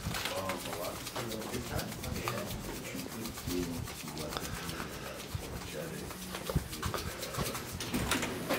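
Faint, indistinct talking with a few soft knocks and footfalls while walking through an office.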